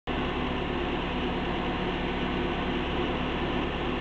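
Electric radiator fan of a 1988 Dodge 2.2L running steadily with the engine idling, heard from inside the cabin; the engine computer has switched the fan on to bring the engine temperature down.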